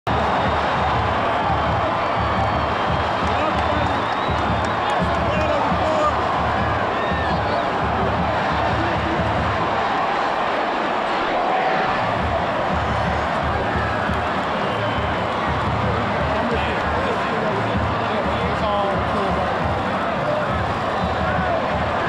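Loud football-stadium crowd noise with music over the loudspeakers, its bass beat pulsing underneath, and voices talking close by.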